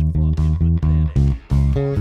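Fender Jazz Bass played fingerstyle in a driving line of repeated low notes, about five a second, moving to higher notes about a second in. Drum hits from the song's backing track play along.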